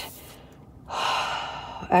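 A woman's long breathy sigh, an exhale of relief, about a second long, starting about a second in.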